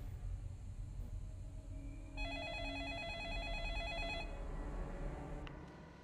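A telephone rings once with an electronic warbling trill about two seconds long, starting about two seconds in, over a low rumbling drone.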